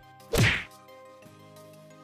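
A single sharp whack-like hit sound effect about half a second in, on the cut to a countdown number card, over soft sustained background music chords.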